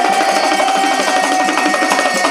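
Oggu Katha folk music: fast, dense hand percussion with one long held note over it.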